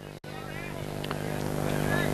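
A steady motor hum that grows gradually louder, after a brief dropout in the sound, with faint distant voices.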